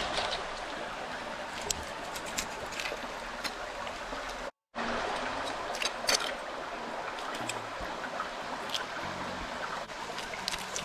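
Steady rush of running water, with scattered sharp clicks and scrapes from a knife working on crayfish shells against a stone slab. The sound cuts out completely for a moment a little before halfway.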